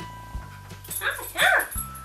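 Background music with a steady beat; about a second in, a cocker spaniel gives a short whine that rises and falls in pitch.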